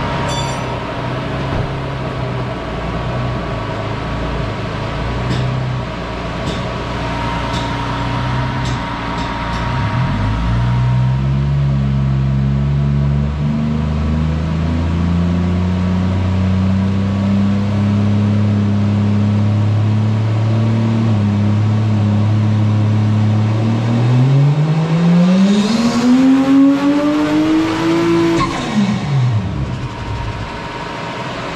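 Toyota JZX100 Chaser's turbocharged 1JZ-GTE VVT-i inline-six, with a 3-inch straight-pipe exhaust, running on a Dynapack hub dyno. It holds a steady low engine speed, then makes a full-throttle power pull, its pitch rising smoothly up toward redline before the throttle closes and the revs drop quickly near the end.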